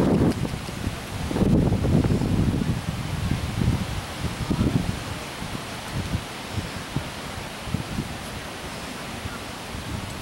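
Wind buffeting the microphone in low rumbling gusts, heaviest in the first half and easing later, over a steady rustling hiss.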